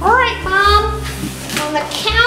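A high-pitched voice making three drawn-out vocal sounds without clear words, over a low steady background.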